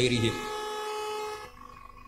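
A steady, horn-like pitched tone lasting about a second, starting just after speech breaks off and fading out shortly before speech resumes.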